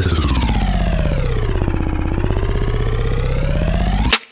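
Electronic siren-like sweep played on a drum-pad sampler: one pitched sound, finely chopped into a fast stutter, glides down in pitch and back up again over a steady low bass note.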